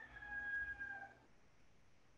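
A faint, held call on one steady pitch with overtones, sagging slightly as it stops about a second in, then only faint background hiss.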